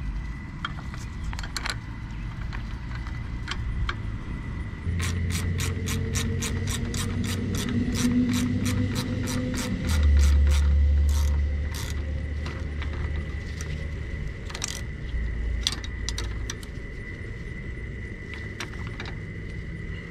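Trailer jack being cranked by its side handle, its gears clicking in a steady rhythm of about three clicks a second for several seconds, then only a few scattered clicks. A low rumble swells underneath twice.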